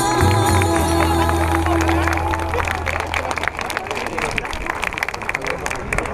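Latin American folk dance music that ends about halfway through, followed by audience clapping and crowd noise.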